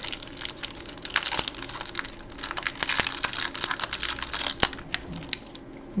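Foil candy wrapper being unwrapped from a chocolate truffle, crinkling and crackling in quick fine bursts that die away about five seconds in.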